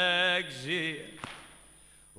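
A male reciter chants a Shia Muharram lament (latmiya) unaccompanied. A held note ends with a short wavering vocal turn. It is followed by a pause of about a second, broken by one sharp click.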